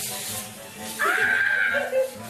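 A high squealing cry starts about a second in and lasts just under a second, over background music.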